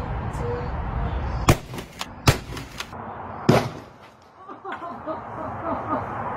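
Sharp explosive bangs of a car airbag being set off under a wooden board, three loud ones within about two seconds with smaller cracks between them.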